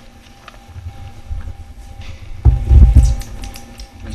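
A few muffled low thumps and rumble about two and a half seconds in, with lighter rumble before it, over a quiet room with a faint steady hum.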